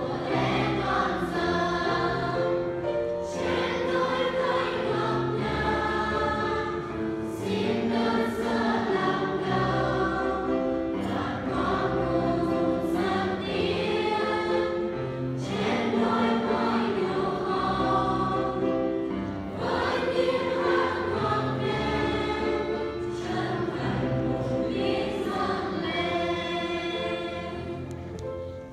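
A mixed church choir singing a Vietnamese hymn in phrases, with piano accompaniment.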